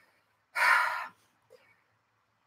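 A single short audible breath, about half a second long, coming just after half a second in.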